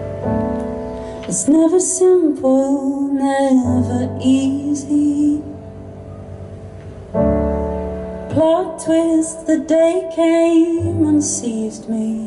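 A woman singing live with piano accompaniment: two sung phrases over held chords, with a fresh chord struck near the start and again about seven seconds in.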